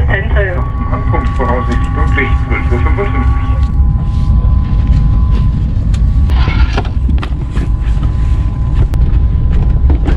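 Passenger train running, heard from inside the carriage: a loud, steady low rumble with a steady high whine over it. Voices are heard in the first few seconds, and there are scattered knocks.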